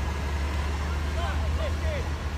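Outdoor sound from a phone video: a steady low rumble, like wind or traffic on the microphone, with faint short chirps above it.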